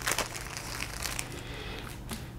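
Clear plastic bag crinkling as a plastic model-kit sprue is slid out of it, with a louder rustle just after the start.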